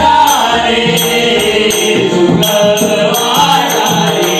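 A bhajan group singing a Marathi devotional abhang in chorus, with a pakhawaj-style barrel drum and small brass hand cymbals (taal) keeping a steady rhythm.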